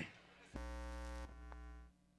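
A low electrical mains buzz from the sound system, coming on abruptly about half a second in, dropping after about a second with a small click, and cutting off near the end.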